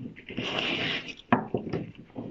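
A large picture card being slid out of a wooden kamishibai stage frame: a scraping swish of card against wood lasting about a second, followed by a short knock.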